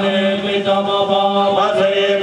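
Sanskrit mantra chanting for a fire offering: one steady chanting voice, drawing syllables out into long held notes with small pitch slides between them.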